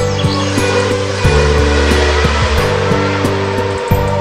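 A car engine sound effect, a rushing noise that rises at the start and fades out near the end, over background music.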